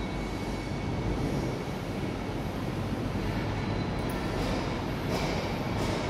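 Steady low rumbling background noise with a faint steady high-pitched tone, and a few faint clicks in the second half.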